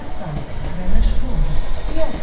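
Voices of people talking close by, with a low rumble that swells about a second in.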